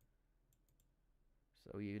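Three or four faint clicks in quick succession about half a second in, typical of a computer mouse's scroll wheel turning, against near-silent room tone.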